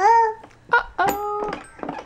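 A toddler babbling: a few short, high-pitched vocal sounds, the longest held for about half a second near the middle.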